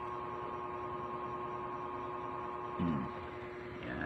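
A steady background hum holding two fixed tones, with a short murmur from a man's voice about three seconds in.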